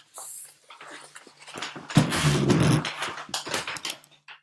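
A hardcover picture book being handled and its pages turned, with scattered rustles, and a loud low sound lasting just under a second starting about two seconds in.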